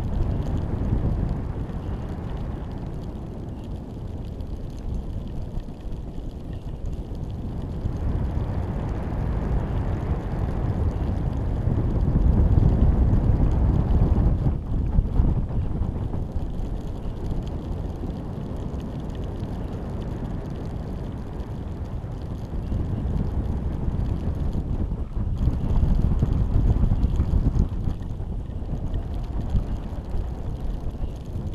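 Wind buffeting the microphone of a camera riding under a high-altitude balloon in flight: a low, steady rumble that swells about a third of the way in and again near the end.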